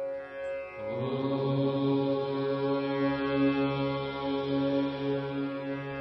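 Meditative intro music: a deep chanted Om comes in about a second in and is held as one long low note over a ringing singing-bowl tone.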